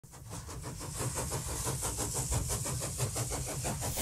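An engine running with a fast, even beat over a low hum, fading in from silence.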